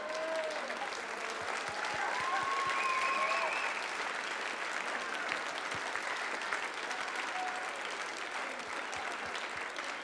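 Audience applauding steadily, with a few voices calling out over the clapping in the first few seconds.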